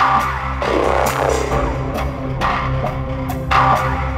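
Loud electronic rock music with a steady drum beat over sustained low bass notes.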